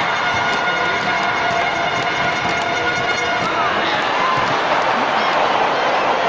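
Arena crowd at a lucha libre match: a steady din of many voices shouting and talking at once, with scattered held shouts or whistles.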